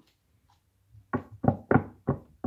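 A deck of tarot cards split in two and tapped against a tabletop to square the halves before a riffle shuffle. The taps come as a quick run of five or six soft knocks starting about a second in.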